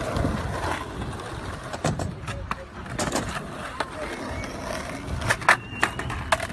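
Skateboard wheels rolling over concrete with a low rumble, broken by sharp clacks of the board: one about two seconds in, one about three seconds in, and two close together near the end.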